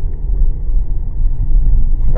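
A loud, steady low rumble with no speech.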